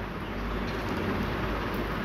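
Sliced onions and green chillies sizzling in hot oil and ghee in a large pan, a steady hiss.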